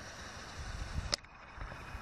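Low, uneven wind rumble on the microphone of a handheld outdoor recording, with one short, high-pitched chirp or click about a second in.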